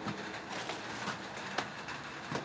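Faint handling noise with a few light clicks, the sharpest about a second and a half in.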